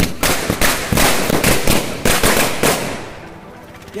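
Ground firecracker going off in a rapid, irregular run of loud crackling bangs for nearly three seconds as it sprays sparks, then dying away.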